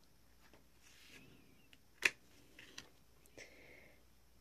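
Faint scraping of a clear plastic scraper card drawn across a metal nail-stamping plate, with a single sharp click about two seconds in and a few soft taps after it.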